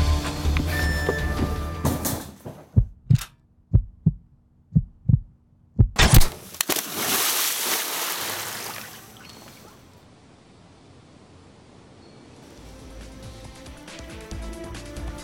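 Soundtrack music, then a quick run of six or so sharp hits over a low hum. A heavy impact follows and the spray of a big water splash fades out over a few seconds before the music returns.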